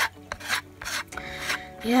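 Plastic Lego turntable base being turned by a finger, its parts rasping against each other in several short scraping strokes.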